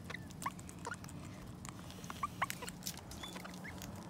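A king parrot and a crimson rosella feeding from a metal bowl of seed: quick irregular pecking and seed-cracking clicks, mixed with many short, squeaky rising chirps.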